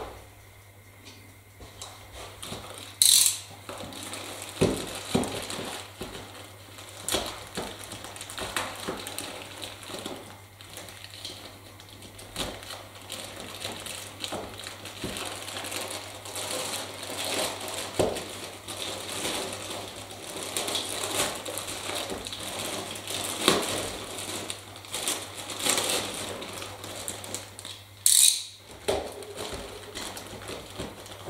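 A plastic bag crinkling and small model overhead-line masts clicking against each other as they are sorted through by hand, with two brief louder crinkles, about three seconds in and near the end. A steady low hum runs underneath.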